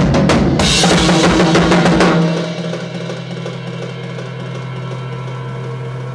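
Rock drum kit played hard and fast, bass drum and snare in rapid strokes with a cymbal crash about half a second in, stopping abruptly about two seconds in. A steady low drone then holds on, quieter, to the end.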